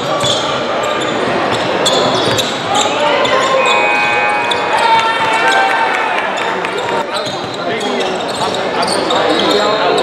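Basketball dribbled on a hardwood gym floor during play, with short high squeaks a few seconds in, under the chatter of players and spectators in a large hall.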